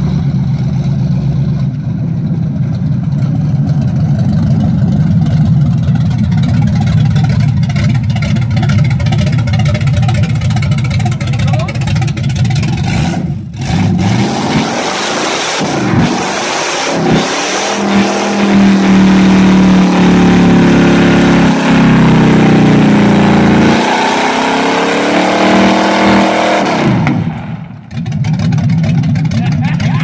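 Chevy 350 small-block V8 running loud and steady, then revved hard several times from about halfway in. It is held at high revs for several seconds with the rear tyres spinning and squealing in a burnout, and the revs drop away near the end.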